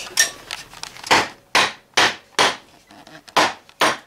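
Wooden mallet striking the end of a new wooden axe handle, driving the handle down into the axe head: about seven sharp knocks, a little under half a second apart, with a short pause about halfway through.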